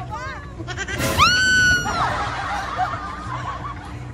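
Riders on a drop tower squealing and shrieking. About a second in comes one high scream held for nearly a second, the loudest sound, followed by wavering giggles and cries.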